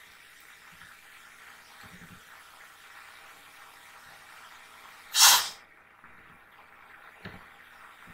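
A single loud, short rush of breath close to the microphone about five seconds in, over a faint steady hiss, with a few faint taps before and after it.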